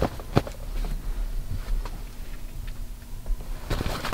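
Light handling noise as a fitted baseball cap is turned over in the hands, with one sharp click under half a second in and a few faint ticks, over a low steady hum.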